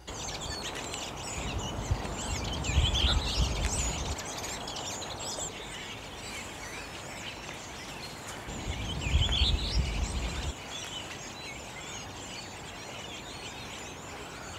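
Redwings singing their quiet, warbling sub-song together, a continuous twittering chatter, more warbler-like than thrush-like. Two louder warbled phrases stand out about three seconds in and again around nine seconds, each with a low rumble beneath it.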